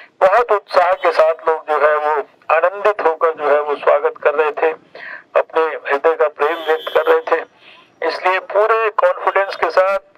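A man giving a speech in Hindi into a handheld microphone, amplified through horn loudspeakers, with a few short pauses.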